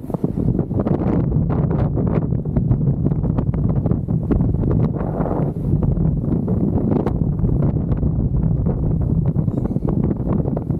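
Strong wind buffeting the microphone as a kite buggy rolls fast over hard-packed sand, over a steady low rumble with many small clicks and rattles.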